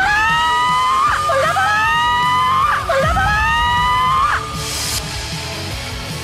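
A young woman's long, loud scream of a shouted wish, 'raise my salary!', held for about four seconds. Its pitch rises at the start, dips twice and breaks off, and it is shouted as loud as she can at a sound level meter. Background music plays under it and carries on after the scream ends.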